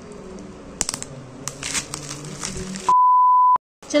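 Plastic bubble wrap and a cardboard box crinkling and rustling as they are handled, with a few sharp clicks. About three seconds in, a loud, steady, high beep cuts in for under a second, an edit bleep laid over the sound, and stops abruptly into dead silence.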